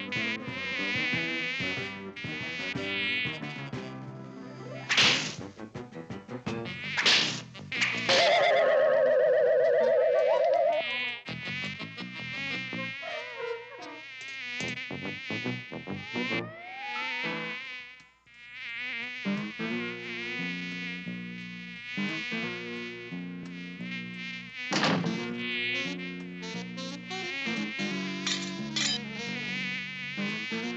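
Cartoon housefly buzzing, a high wavering whine that keeps changing pitch as it moves about. It is cut by a few sharp hits, a couple around 5 to 7 seconds in and another around 25 seconds in. A loud, steady, wobbling tone is held for about three seconds near 8 seconds in.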